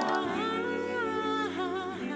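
A voice humming a melody in long held notes that slide up and down between pitches.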